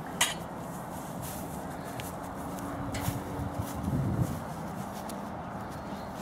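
Light clicks and knocks of tent poles and spreader bars being handled and fitted, one sharper click just after the start, over a steady outdoor hiss.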